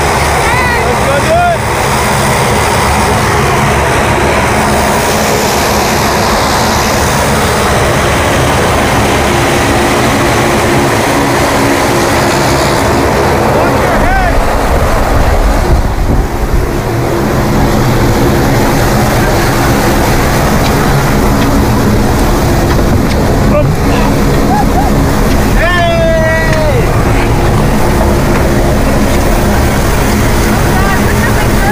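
Loud, steady drone of a skydiving plane's propeller engines running. It grows heavier in the low end about halfway through, as the plane is boarded, and is then heard from inside the cabin.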